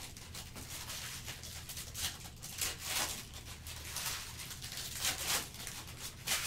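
Foil trading-card pack being torn open by hand, its wrapper crinkling in a series of short rustles and tears, over a steady low hum.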